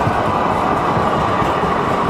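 Sacramento Regional Transit light rail train passing on street track: a loud, steady rolling noise of its steel wheels on the rails.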